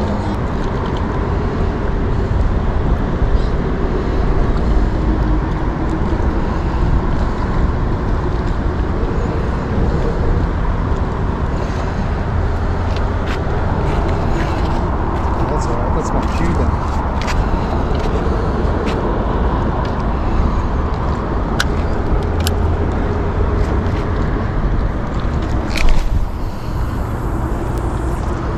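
Steady road traffic noise with a continuous low rumble, mixed with outdoor background noise, and a few light clicks in the second half.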